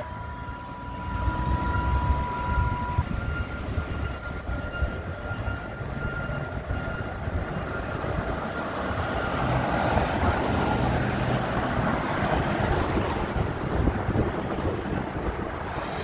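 Fire apparatus diesel engines and road traffic rumbling as a fire engine and ladder truck drive up the street, getting louder about halfway through. Two faint steady tones sound over the rumble, one stopping a few seconds in and the other after about ten seconds.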